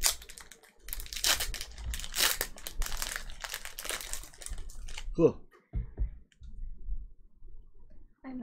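Foil wrapper of a Pokémon card booster pack being torn open and crinkled by hand: a dense crackle for about the first four and a half seconds, then it stops.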